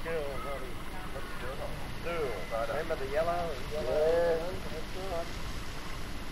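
A group of people talking at a distance, with several faint voices overlapping, over a steady low background noise.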